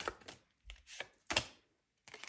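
A deck of tarot cards being shuffled and handled by hand: four or five crisp snaps and taps of the cards, stopping about one and a half seconds in.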